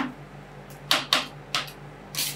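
Metal spatulas clicking and scraping against a stainless steel ice-cream-roll cold plate as they chop and work a half-frozen cream mixture. There are several short sharp clicks, two in quick succession about a second in, over a low steady hum.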